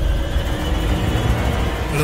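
Tense drama background score: a heavy, steady low rumble under faint sustained tones.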